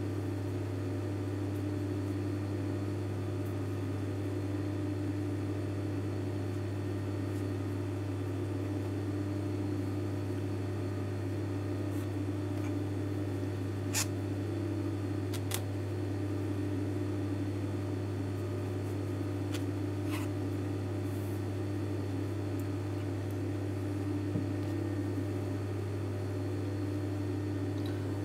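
A steady low electrical hum that does not change, with a few faint clicks as the fabric is handled. No stitching is heard.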